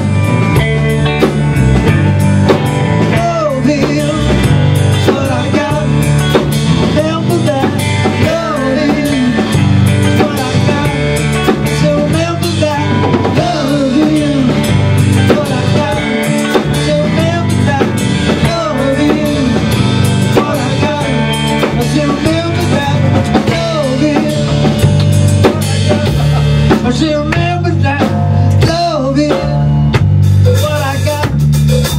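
A live rock band playing: a Tama drum kit, electric bass and electric guitar. The guitar line repeatedly glides up and down in pitch.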